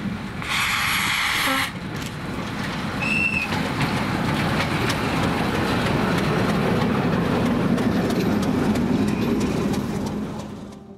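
Class 752 diesel-electric locomotive approaching and passing close by, its engine rumble building to loudest as it draws level, with faint wheel clatter on the rails. A brief loud burst of high-pitched noise about half a second in, and a short high tone about three seconds in.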